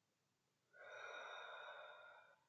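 A woman's deep breath, audible as a soft, even rushing hiss that starts after a short near silence about two-thirds of a second in and lasts under two seconds.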